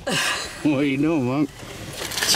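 A person's voice making one drawn-out, wavering wordless sound, like an exaggerated hum, lasting just under a second near the middle, after a brief noise at the start.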